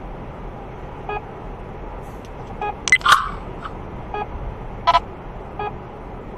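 Steady road noise inside a moving car, with short electronic beeps about every second and a half. Two louder, sharper sounds come about three and five seconds in.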